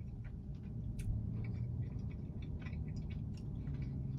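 A person chewing a bite of soft frosted cookie with the mouth closed, making scattered small mouth clicks over a low steady hum.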